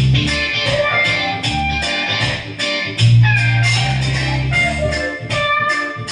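Instrumental passage played on an electronic keyboard: a plucked, guitar-like melody over held bass notes and a steady drum beat, with no vocal.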